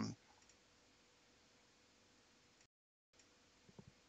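Near silence: faint room tone with a thin steady hum, cut by a brief total dropout a little before three seconds, and a few faint clicks near the end.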